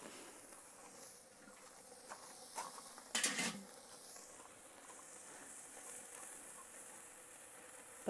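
Burger patties sizzling over lit charcoal on a kettle grill: a steady, faint high hiss with a few small crackles and one louder short crackle about three seconds in.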